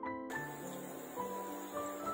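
Soft keyboard background music over the sizzling of snacks deep-frying in hot mustard oil. The sizzle comes in suddenly about a third of a second in and then holds steady.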